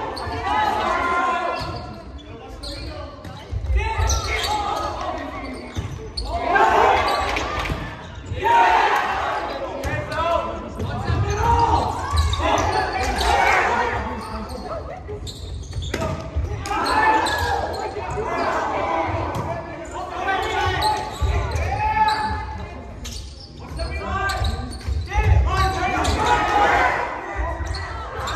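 Players and spectators shouting and talking in a large, echoing gym during a volleyball rally, with repeated dull thuds from the ball being played and hitting the hardwood floor.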